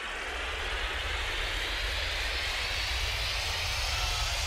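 A whoosh transition sound effect: a rushing noise that starts suddenly and slowly rises in pitch over a deep low rumble.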